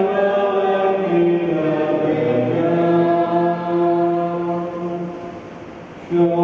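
A slow communion hymn sung in long held notes, fading at the end of a phrase near the end.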